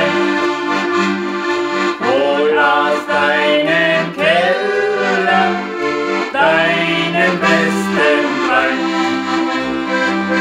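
A piano accordion and a diatonic button accordion playing a folk song together over a rhythmic bass, with a man and a woman singing along.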